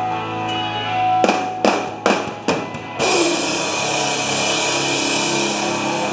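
Live pop punk band playing loud: guitars ring on a held chord, then the band and drums strike four sharp accented hits, and about three seconds in a crashing cymbal and ringing chord take over and sustain.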